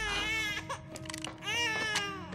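A baby crying in repeated wailing cries, at the start and again near the end.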